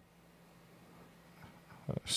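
A pause between a man's spoken sentences. It holds only faint room noise and low hum with a few soft small sounds, then a brief sound just before his voice returns.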